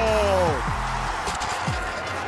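A held, pitched sound with overtones slides slowly down and drops away sharply about half a second in. After it comes the steady noise of a football stadium crowd.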